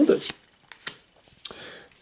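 Pokémon trading cards being slid and flipped in hand, one card moved from the front of the stack to the back: a few light snaps and a brief rustle of card on card.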